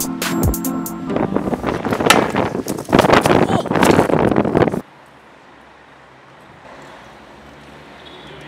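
Electronic background music for about the first second, then wind on the microphone and stunt-scooter wheels rattling over brick pavers, which cut off suddenly near five seconds. A faint, steady outdoor background follows.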